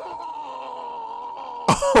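A man's long, drawn-out anguished cry of "Shoto!", held on one steady pitch: an anime character's voice in the episode being watched. Near the end it is cut off by another man's sudden loud exclamation.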